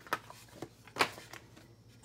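Sheets of cardstock and patterned paper slid and shuffled by hand on a tabletop: a few brief papery rustles, the loudest about a second in.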